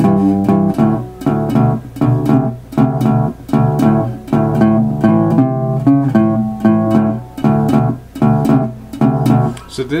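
Resonator guitar in open D tuning played with a slide: a shuffle over a constant, palm-damped thumb bass, about two strong beats a second, with slid notes ringing above.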